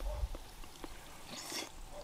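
Quiet eating sounds: a few faint clicks of plastic spoons against plastic bowls and a short breath through the nose about one and a half seconds in.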